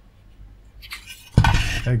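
An amplifier module's finned metal heatsink set down on a workbench, with a few faint clicks and then a sudden loud metallic clatter about one and a half seconds in.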